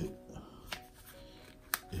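Soft background music with two small sharp clicks about a second apart, from the DJI Osmo Pocket being fitted into its hard plastic protective case.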